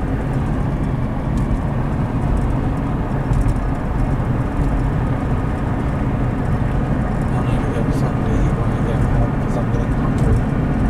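Steady low rumble inside a running car's cabin.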